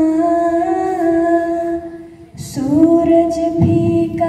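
A girl singing solo and unaccompanied into a microphone, in long held notes, with a short pause for breath about two seconds in before the next phrase starts.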